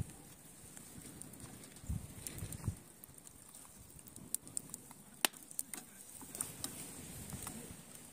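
Wood campfire embers under a cooking pot crackling faintly, with sparse sharp pops and clicks over a low steady hiss, and a couple of soft knocks in the first few seconds.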